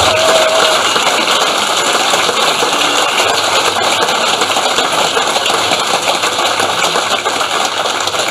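Large audience applauding steadily, a dense, even clapping that eases off slightly near the end.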